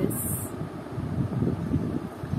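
Low, uneven background rumble with no clear tone or rhythm.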